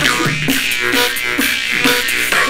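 Two jaw harps twanging a drone with shifting overtones over live beatboxing: vocal bass kicks and snare-like hits keep the beat.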